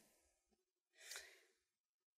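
Near silence in a pause of speech, broken once about a second in by a short, soft breath from a woman at a lectern microphone.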